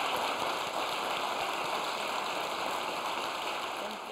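Audience applause, a steady dense clatter of many hands clapping, starting to fade out near the end.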